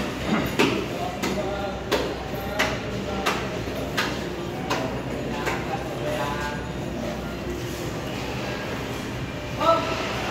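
Butcher's large knife chopping into a side of pork, sharp blows about every 0.7 s that stop about six seconds in.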